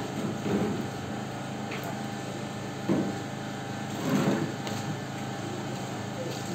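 A steady mechanical hum with several steady tones, broken by three short louder sounds about half a second, three seconds and four seconds in.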